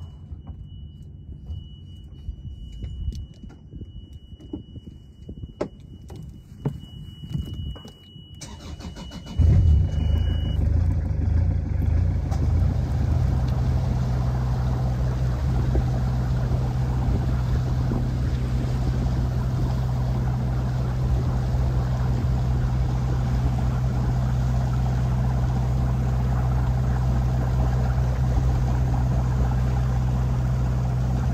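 A sailboat's engine is started: a steady high beep, typical of the low-oil-pressure warning, sounds while the ignition is on. About nine seconds in the engine catches with a sudden loud low drone, and the beep stops about a second later. The engine then runs steadily.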